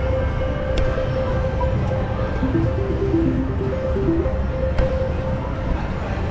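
Electronic slot machine tones: a held beep with short stepped melody notes over a steady rumble of casino floor noise, with two sharp clicks, one about a second in and one near the end.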